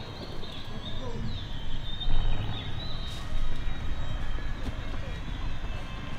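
Roadside ambience: a steady low rumble of distant traffic, with faint high chirps over it.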